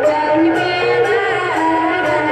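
Lakhon Basak theatre music from a traditional Khmer ensemble: a melody of held, sliding notes over light percussion ticks about twice a second.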